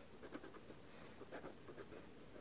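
Faint scratching of a pen on paper in two short bouts of quick strokes, as a star mark is drawn in the margin.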